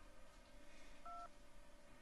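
Mobile phone keypad tone: one short two-tone beep about a second in as a key is pressed, otherwise near silence.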